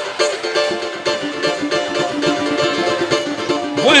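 Cavaquinho and samba banjo strumming chords together in a quick, steady samba rhythm, playing in F major.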